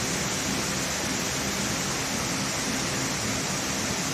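Steady, even hiss of background noise with a faint low hum, unchanging throughout, with no distinct press strokes or impacts.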